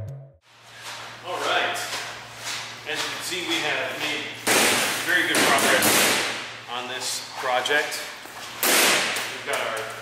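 A man speaking, with a loud burst of hissing noise about halfway through and a shorter one near the end, over a steady low hum.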